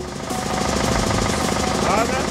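Horror-film sound effect: a fast, steady rattle of rapid even pulses, with a rising voice-like glide near the end.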